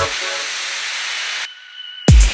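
Break in an electronic dance track: the kick drum and bass stop, leaving a steady white-noise hiss. About one and a half seconds in the hiss cuts off suddenly, and a brief lull with a faint high tone follows.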